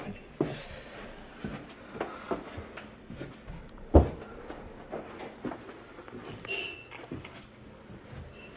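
Footsteps and handheld-camera handling noise as a person walks and starts down a staircase: a series of scattered knocks and thuds, with one sharp thump about halfway through.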